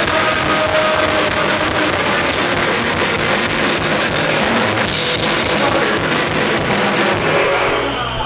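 Indie rock band playing loud and live: distorted electric guitar over a drum kit with crashing cymbals, taken close to the stage. The full band sound thins out near the end.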